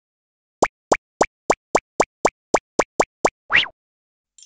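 Cartoon sound effects for an animated logo intro: eleven quick pops in a row, coming slightly faster towards the end, then a short rising swoop.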